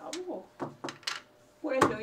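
Short bursts of conversational speech, with a pause and then louder talking again near the end.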